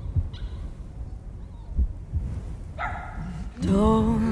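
A cartoon dog's voice in an animated film's soundtrack: a short yelp a little before three seconds in, then a louder wavering cry near the end. Dull low thumps sound underneath.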